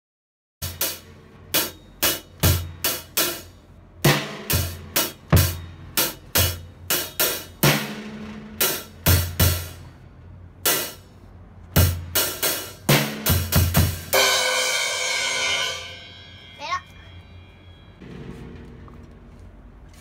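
Acoustic drum kit played in rhythmic phrases of snare, tom and bass drum hits with cymbals, a few strokes a second. About fourteen seconds in it ends on a cymbal crash that rings and fades out over about two seconds.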